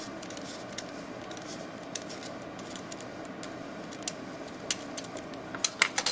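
Craft knife blade scraping a stick of orange chalk, light scratchy ticks over a steady background hum, with a few sharper clicks near the end.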